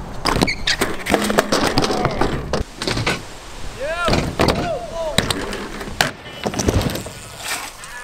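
BMX bikes riding and landing on skatepark ramps: a run of sharp knocks and rattles, with a few short squeaks about halfway through.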